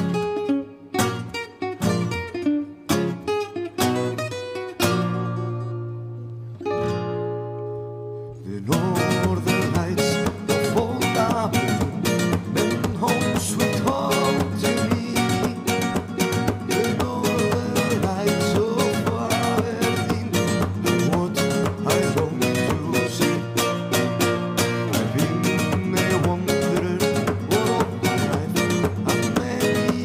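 Two acoustic guitars playing together: a Gypsy-jazz style guitar and a nylon-string classical guitar. They open with slow, spaced chords left to ring, then about nine seconds in break into fast, continuous rhythmic playing.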